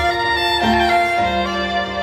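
Live band music led by a violin playing a sustained, gliding melody over keyboards and a low beat, recorded from the audience in a concert hall.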